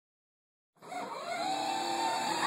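Electric motors and plastic gearbox of a children's battery-powered ride-on Chevrolet Camaro toy car, starting suddenly about a second in and then running with a steady whine as it drives on carpet.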